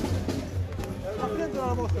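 Voices singing over drum beats, with crowd chatter around them.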